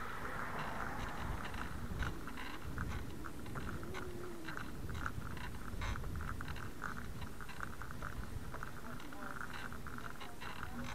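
Wind and road rumble on a bicycle-mounted camera moving along a concrete sidewalk, with a steady stream of small irregular clicks and rattles.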